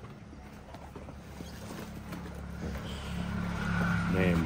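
Second-hand sneakers being handled and sorted, with a few faint knocks, over a low steady hum that grows slowly louder.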